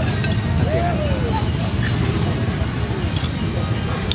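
Steady low background rumble with no clear single source. One short spoken 'okay' comes about a second in.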